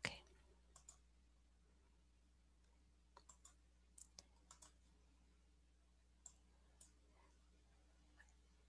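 Faint computer mouse clicks, scattered singly and in short runs, with one sharper knock at the very start, over a faint steady electrical hum.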